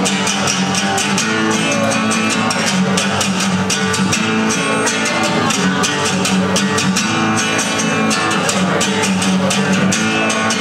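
Amplified acoustic-electric guitar strummed in a rock song's instrumental stretch, with a steady driving beat.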